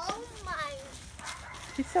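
A small dog gives a few short, high whining yelps in the first second.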